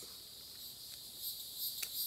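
Insects chirring steadily in the trees, a high-pitched shrill that starts pulsing at about four beats a second after a second or so. A single sharp click comes near the end.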